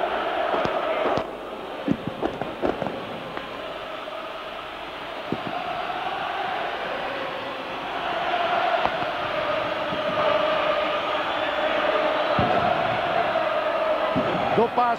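Large football stadium crowd chanting and singing together, with a few sharp bangs scattered through it; the chanting swells louder from about eight seconds in.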